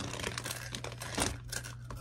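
A Takis snack bag crinkling as it is handled, a run of irregular crackles.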